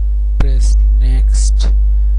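Loud, steady electrical mains hum on the recording. A single sharp mouse click comes just under half a second in, followed by a few short breathy noises.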